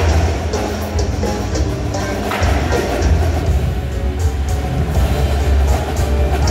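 Indoor percussion ensemble playing its show: mallet keyboards, drum kit and cymbals over a heavy, steady bass line from the sound system, with regular cymbal or hi-hat strokes on top.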